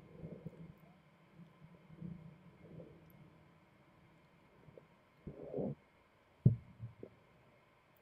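Slowed-down court sound from a slow-motion tennis replay: faint low rumbling, then a single dull thud about six and a half seconds in, followed by two fainter knocks.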